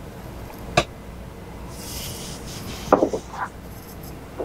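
Tasting glasses handled at a wooden bar. There is a small click about a second in, a soft breathy hiss around two seconds, and near three seconds a knock with a brief ring as a whiskey glass is set down on the wooden bar top.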